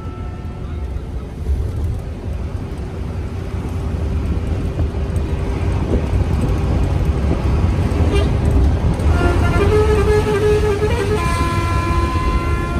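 Bus engine and road noise as a steady low rumble that grows louder as it speeds up. From about nine seconds in, a multi-tone horn sounds, its notes shifting and then holding.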